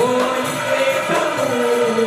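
Goan ghumat aarti: a group of male voices singing a devotional song in unison over ghumat clay-pot drums and jingling hand cymbals. The voices slide up into a new note at the start and then hold long notes.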